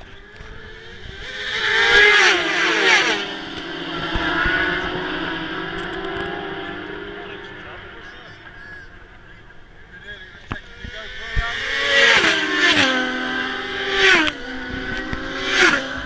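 600cc Supersport racing motorcycles passing at full speed. One goes by about two seconds in, its engine note rising as it approaches and dropping in pitch as it passes, then fading. From about twelve seconds several more pass in quick succession, each with the same drop in pitch.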